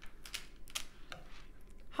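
Soft, irregular clicks as a strand of freshwater cultured pearls is handled, the beads knocking against one another.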